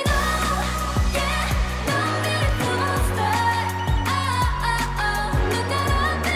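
K-pop girl group song with female vocals over a heavy bass and drum beat, which kicks in right at the start after a drum build-up.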